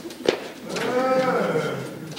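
A man's long drawn-out groan, rising and then falling in pitch, with a sharp knock just before it about a quarter second in.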